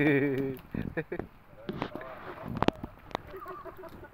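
A man's voice calling out at the start, then a few sharp clicks or knocks about two seconds in, and faint talk near the end.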